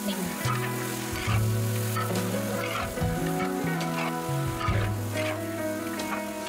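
Pork chunks sizzling in a large wok while a metal spatula stirs and scrapes through them with repeated short strokes, under background music with a slow bass line.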